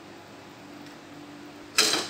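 A faint steady hum, then near the end one sharp clack as a small metal rod end cap is set down on a wooden table.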